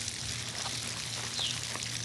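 Steady backyard ambience: a constant hiss with a low hum underneath, a few faint soft ticks, and one short falling chirp about one and a half seconds in.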